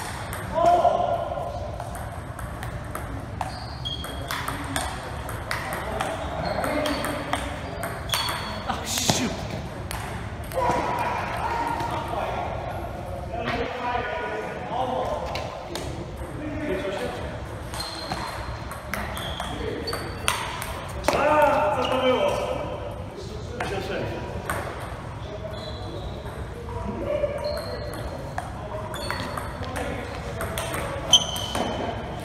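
Table tennis rally: a ball ticking off paddles and bouncing on the table in a series of short, sharp clicks, echoing in a large hall. Voices break in now and then and are the loudest sounds, about a second in and about two-thirds of the way through.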